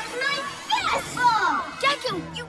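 Cartoon children's voices exclaiming and shouting over background music.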